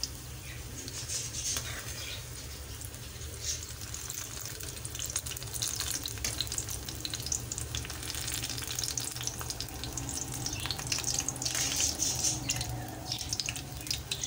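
Eggplant slices shallow-frying in oil in a steel pan, sizzling with a steady fine crackle. A low steady hum runs underneath.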